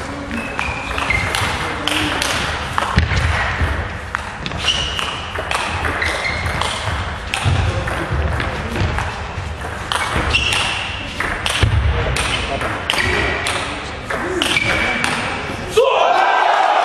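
Table tennis rally: the celluloid ball clicks again and again off the bats and the table, with players' shoes thudding and squeaking on the court floor.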